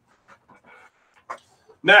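A short pause in a man's speech, with faint breathing close to the microphone and a small click just past a second in; his speech starts again near the end.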